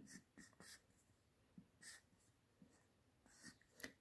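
Very faint strokes of a marker pen drawing on paper: a handful of short scratches.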